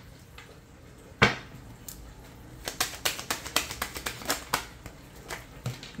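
A deck of cards being shuffled by hand on a table. There is one sharp tap about a second in, then a quick, uneven run of card clicks and slaps, several a second, over the second half.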